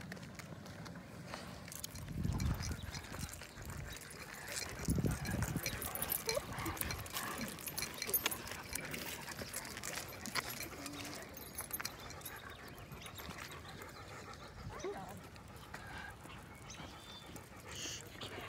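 Leashed dogs moving about on an asphalt path: scattered clicks and jingles of collar chains and leash clips, with footsteps on the pavement. Two low rumbles come about two and five seconds in.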